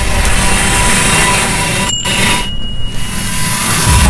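A loud, dense rushing roar of noise. It cuts out for an instant about two seconds in, dips briefly, then swells again near the end.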